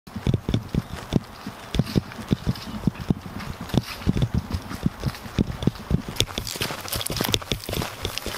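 Hard-soled dress shoes stepping on a paved sidewalk: a steady run of sharp heel clicks, about two to three a second.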